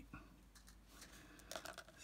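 Mostly near silence, with a brief cluster of faint small clicks about one and a half seconds in, from beads and fine jewellery wire being handled on a work surface.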